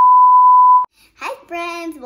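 Test-pattern tone played with TV colour bars: one steady, loud, high-pitched pure beep that cuts off suddenly just under a second in.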